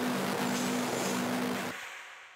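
Loud rushing noise drone with a low hum that pulses about every half second, part of an electronic sound-design soundtrack; it cuts off abruptly near the end and fades.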